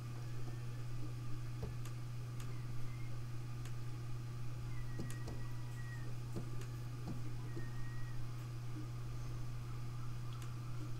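UGREEN DXP4800 Plus NAS idling with its four 10TB enterprise-class hard drives spun up: a steady low hum from the fan and drives, with scattered faint irregular clicks of drive activity.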